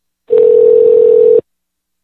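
A loud, steady telephone line tone, a single pitch lasting about a second and starting with a click, heard on the call just after the line was hung up.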